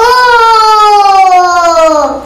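A high sung note from a pop song, held for about two seconds and sliding slowly down in pitch.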